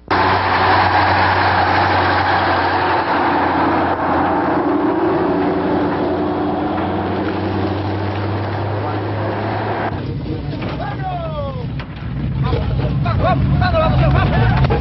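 Heavy military truck engines running as a convoy moves along a road, a steady engine drone with road noise. About ten seconds in the sound changes abruptly: a few falling whistle-like glides, then a deeper engine rumble with voices over it near the end.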